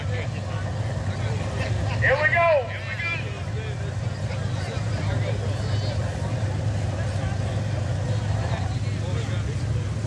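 Two drag race cars' engines idling at the starting line, a steady low rumble, with a brief burst of announcer speech about two seconds in.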